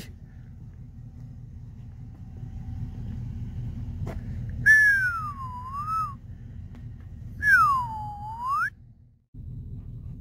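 A person whistling two long sliding notes: the first falls and wavers, the second swoops down and back up. Under them runs a steady low rumble.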